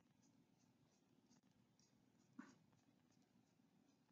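Near silence, with faint, quick scratches of a small paintbrush flicked upward on paper, about three a second.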